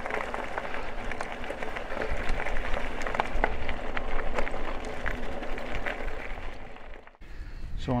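Eskute Star e-bike's tyres rolling over a gravel track and car park: a steady crunching crackle that stops abruptly about seven seconds in.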